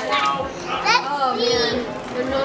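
Children's voices and crowd chatter, with a high child's voice calling out about a second in.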